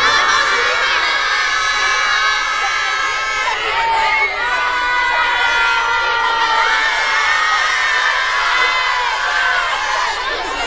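A large group of schoolchildren shouting and cheering together, many high voices at once and loud throughout, with some long drawn-out shouts in the middle.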